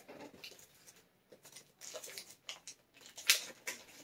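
Faint rustling and crinkling of a plastic mailer bag being handled, with a few sharper crackles, the loudest about three seconds in.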